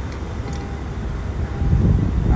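Steady low rumble of a car, growing louder near the end.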